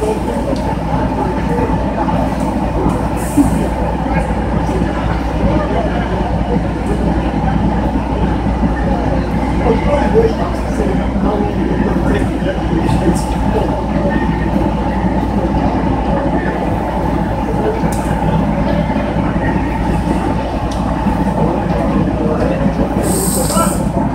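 Fire apparatus diesel engine running steadily, a constant low rumble with a hum, and voices faintly mixed in.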